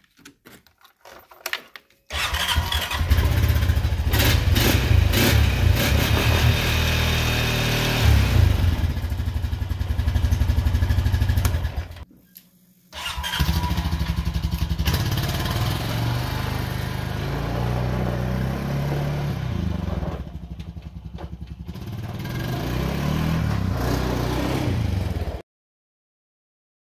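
Honda Rancher 420 ATV's single-cylinder engine running. It comes in suddenly about two seconds in, breaks off for about a second near the middle, then runs again and stops abruptly shortly before the end.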